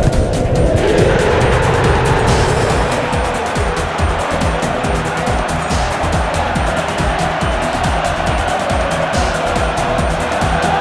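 Background music with a steady beat laid over a football crowd's sustained roar, which swells about a second in as a goal goes in.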